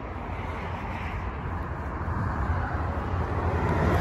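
Low, steady motor-vehicle rumble with a noisy hiss, growing gradually louder.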